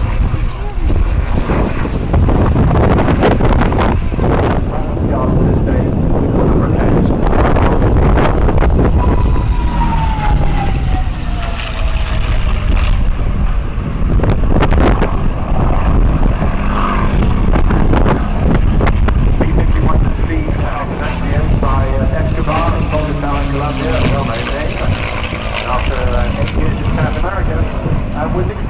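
Display aircraft's engine heard passing overhead, its note falling steadily about nine to twelve seconds in as it goes by, under heavy wind noise on the microphone.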